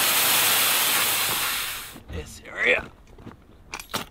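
Loud, steady rush of air escaping from the valves of inflatable stand-up paddleboards as they are pressed flat to deflate. It cuts off suddenly about halfway through, followed by a short voice sound and a couple of sharp clicks near the end.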